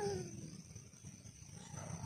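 A man's low "hmm", falling in pitch, in the first half second, then quiet, with a faint steady high-pitched drone of night insects.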